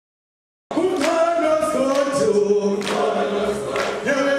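A group of voices singing together in harmony, holding long notes that shift in pitch every half second or so; the singing cuts in suddenly under a second in, after silence.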